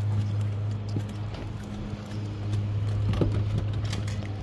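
A crappie in a landing net being swung aboard and set down on a jon boat's deck: scattered knocks and clatter of the net frame and the flopping fish against the deck, over a steady low hum.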